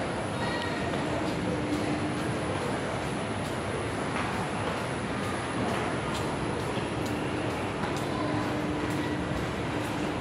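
Steady background noise inside a shopping mall concourse: an even hiss with a faint low hum that comes and goes twice.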